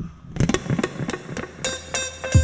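Acoustic guitar played with quick, muted, percussive strums that click like a wood block. Open ringing chords come in near the end.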